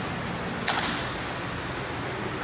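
A person shifting position on a gym floor mat: one short swish about two-thirds of a second in, over steady room noise.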